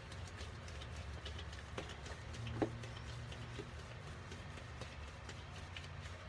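A gloved hand squeezing and working a damp, crumbly powder mixture in a bowl: irregular small crackles and clicks of the crumbling mix and the plastic glove, with one sharper knock about halfway through.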